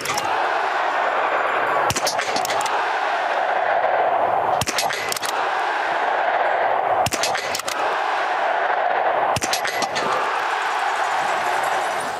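Podcast jingle made of biathlon range sound: a steady crowd din broken by five clusters of quick rifle shots, about every two to two and a half seconds.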